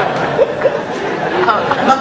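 Several voices talking over one another in a large hall: audience chatter, with a man saying a word near the end.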